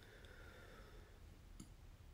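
Near silence: room tone with a faint low hum and two small clicks, one at the start and one near the end.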